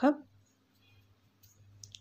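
A voice breaks off at the start, followed by a near-silent pause with a faint low hum and one small click near the end.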